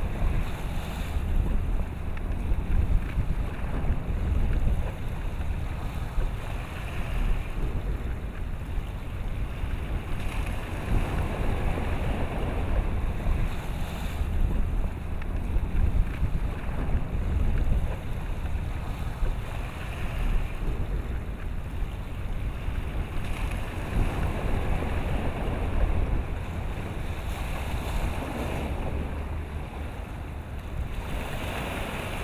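Wind buffeting the microphone in uneven gusts over choppy open water, with a steady wash of waves.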